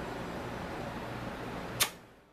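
Steady background hiss with a low hum, and a single sharp click near the end.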